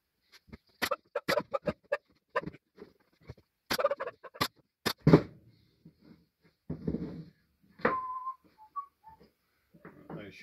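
Plywood and pine pieces being handled on a wooden workbench: a run of sharp wooden knocks and clacks, about a dozen in the first half. Near the end comes a short whistled tone with a few shifting notes.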